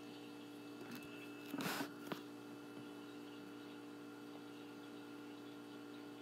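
Quiet room tone with a steady low hum, broken by a short rustling noise about one and a half seconds in and a single click just after it.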